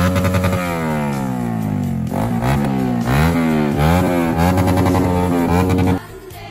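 Yamaha R15's single-cylinder engine being revved while the bike stands. It idles steadily, drops away in a long falling rev-down about half a second in, then takes several short throttle blips, each rising and falling in pitch.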